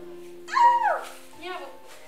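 Background keyboard music with steady held notes. About half a second in, a short, loud, high-pitched yelp rises and falls, and a weaker, shorter one follows about a second later.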